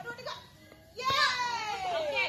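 A child's voice: after a quiet first second, one long drawn-out call that slides down in pitch.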